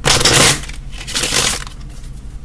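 A deck of tarot cards riffle-shuffled by hand: two bursts of rapid riffling, the first at the start lasting about half a second, the second about a second in.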